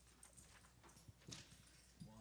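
Near silence: room tone with a low hum and a few faint, brief knocks.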